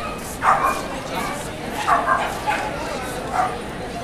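A dog barking in short, sharp yips, about five in all, the loudest about half a second in.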